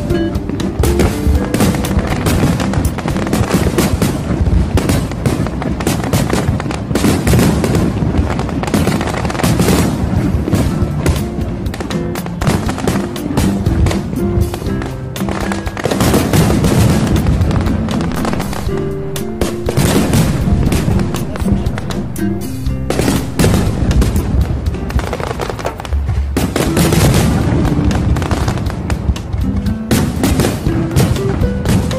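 A fireworks display bursting, many bangs following one another in quick, irregular succession, over music with held notes.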